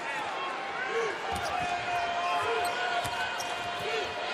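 Live game sound of men's college basketball in a large arena: a steady crowd hum with sneakers squeaking on the hardwood and the ball bouncing, and a long steady tone through the middle.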